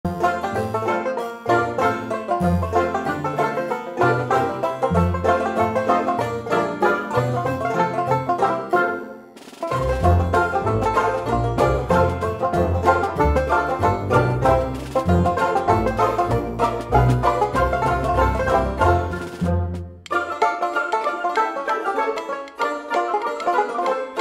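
Instrumental background music with a steady bass line; the music dips briefly about nine and a half seconds in, and the bass drops out for the last four seconds.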